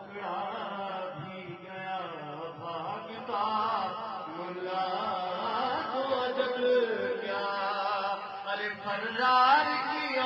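A man's voice chanting a devotional recitation in a melodic style into a microphone, with long held notes that rise and fall. The notes get louder and higher about nine seconds in.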